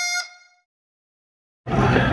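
Background music, a reedy wind-instrument-like melody, ends on a held note that fades out about half a second in, followed by dead silence. Near the end, restaurant room noise starts abruptly.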